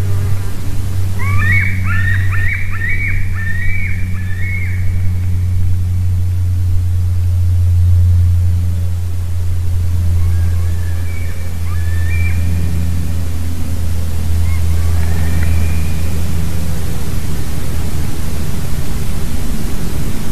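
A bird calling: a quick run of about seven short, rising notes a second in, then a few fainter calls later on. A steady low hum runs underneath.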